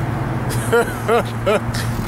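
A man laughing in three short bursts, over a steady low hum.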